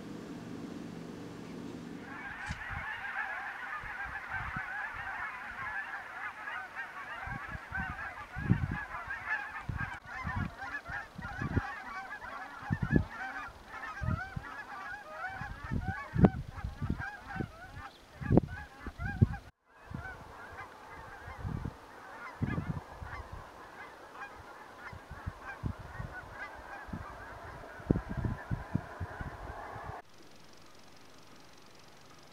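A large flock of geese calling together: a dense, continuous chatter of many overlapping honks that begins about two seconds in, with scattered low thumps underneath.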